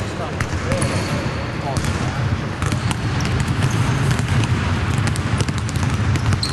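Several basketballs bouncing on a hardwood court, irregular thuds overlapping and echoing around a large empty arena, with brief sneaker squeaks now and then and players' voices in the background.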